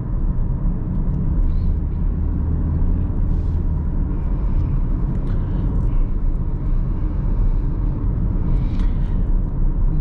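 Steady low engine and road drone inside the cabin of a moving 2018 Toyota Corolla 1.6-litre with a CVT automatic, cruising along.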